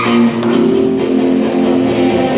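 Live rock band playing, led by strummed acoustic guitar with electric guitar, in sustained chords.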